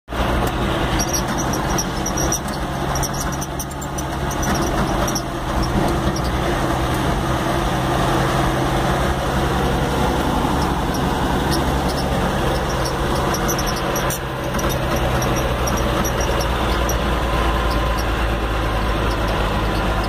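Engine of a Chevrolet vehicle running steadily on the move, heard from inside the cab as a continuous low drone with road noise and scattered light ticks.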